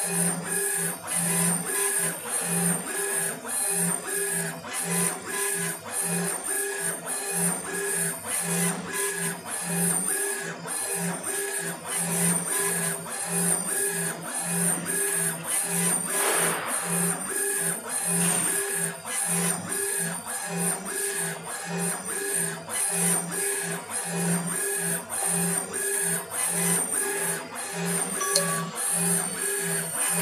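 Laser engraving machine raster-engraving a photo into granite: the motors driving the laser head back and forth make a whirring tone that pulses on and off about twice a second, once for each pass of the head. A brief rush of noise comes a little after halfway.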